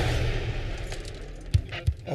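Film-trailer sound: the rushing noise of a speeding car fades away, then two sharp bangs come about a second and a half in and just before the end.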